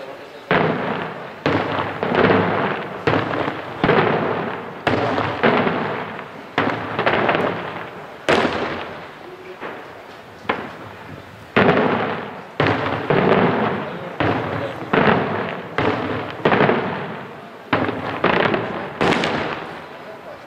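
Daytime aerial firework shells bursting overhead in quick succession, about one sharp bang a second with a short lull near the middle, each bang trailing off in a crackling rumble that echoes for about a second.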